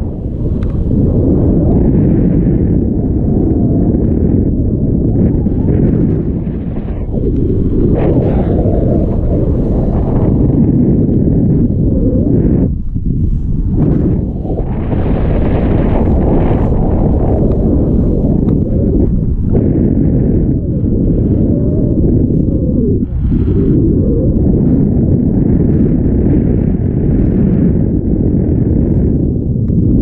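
Wind buffeting the camera microphone during a tandem paraglider flight: a loud, steady low rumble with a few brief lulls.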